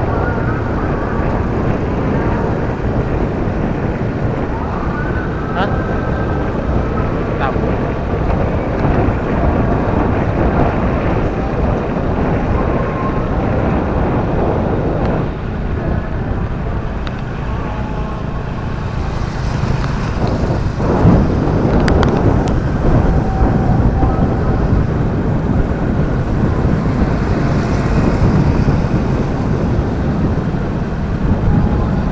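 Wind rushing over the microphone of a moving motorcycle, with engine and road noise, in a steady continuous rumble.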